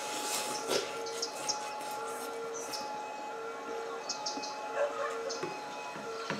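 Instant noodles being slurped and chewed, a noisy rush of sucking in the first second followed by softer mouth sounds. Under it runs a faint steady tone that cuts out and returns several times.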